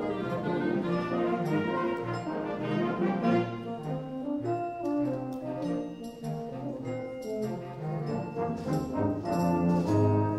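Concert band playing live, with the brass (trombones and euphoniums) leading a passage of full, sustained chords that shift every second or so.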